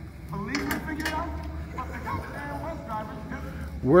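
Film dialogue playing in a room: a man's voice from the movie soundtrack, quieter and more distant than a voice at the microphone, over a steady low hum.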